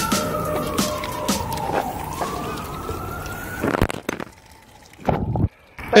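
A siren wailing: its pitch sinks slowly for about two seconds, climbs again for nearly two more, then stops about four seconds in.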